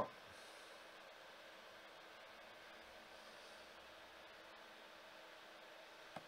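Near silence: room tone, a faint hiss with a thin steady hum.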